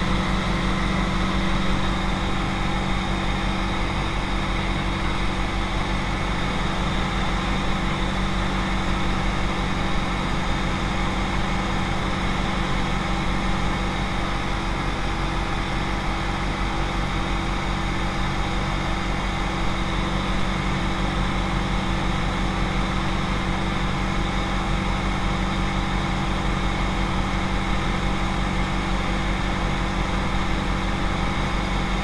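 Single-engine piston propeller aircraft in level flight, heard inside the cockpit: a steady engine and propeller drone at a constant pitch.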